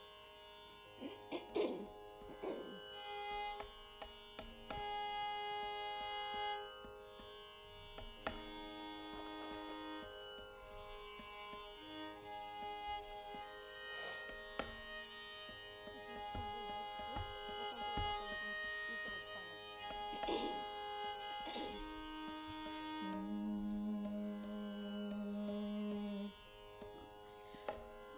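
Carnatic violin sounding separate held, steady notes over a continuous drone, with a few single taps on the mridangam scattered through, as the instruments are readied before the piece.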